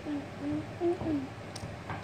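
A person humming about four short closed-mouth "mm" notes, some gliding slightly in pitch, like mm-hmm sounds of agreement.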